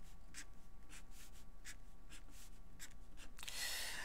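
Pen writing on paper: quiet, short scratchy strokes, about three a second, as letters and lines are drawn.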